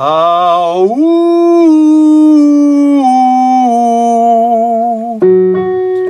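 A man's singing voice doing a vocal exercise, a roller-coaster 'woo': it slides up into a held high note and then steps slowly down in pitch, about four notes. The exercise demonstrates singing high notes freely, without strain. A keyboard note sounds about five seconds in.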